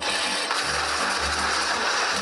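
A loud, steady rush of noise that starts suddenly, laid over background music.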